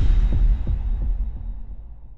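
Logo-intro sound effect: a deep, low boom that pulses a few times in its first second and then fades away.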